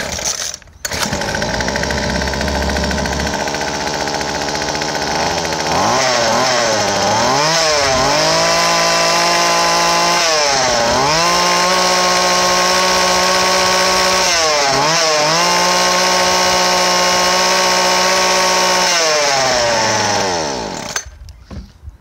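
Weed Eater Featherlite FX26 25cc two-stroke trimmer engine pull-started warm, catching within the first second. It idles for about five seconds, then is revved up and down, held at high speed three times with short drops back toward idle between. It is shut off near the end and winds down, running fine.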